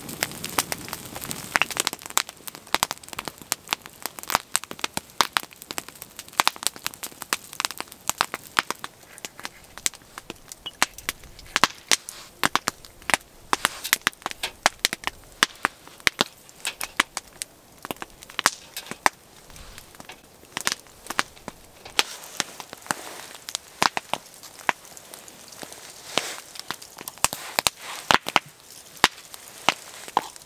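Burning log fire crackling, with many sharp pops and snaps close together.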